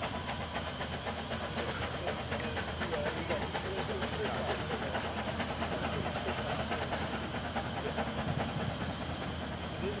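Steady hiss of steam from a narrow-gauge steam locomotive, with people's voices faintly in the background.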